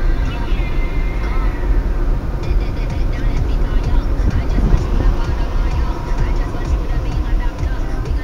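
Steady low rumble of a car's tyres and engine heard from inside the cabin while driving, with a voice and music faintly underneath.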